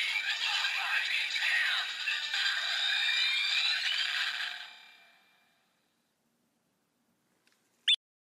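Bandai DX Kamen Rider Chronicle Gashat toy playing electronic music through its small built-in speaker, thin with no bass, fading out about five seconds in. Just before the end comes a brief, loud swooping electronic tone.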